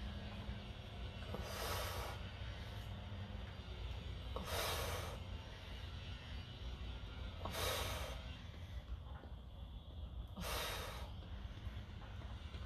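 A woman's short, hissing breaths of exertion, four of them evenly spaced about three seconds apart, one with each repetition of a tricep extension on TRX suspension straps.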